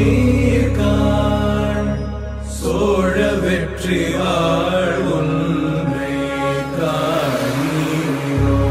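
Devotional chant-like singing: one voice carrying a slow, wavering melody in long phrases over a steady low drone, with a short pause between phrases.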